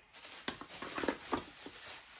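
Hands handling cardboard packaging: light rustling with a few small taps and scrapes.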